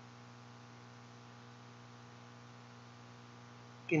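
Steady low electrical hum with a faint hiss under it, unchanging throughout.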